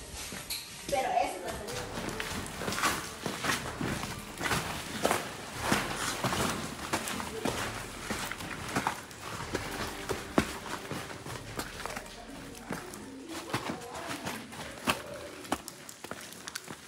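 Footsteps and scrambling over rough lava rock and rubble: irregular scrapes, crunches and knocks of shoes and hands on stone.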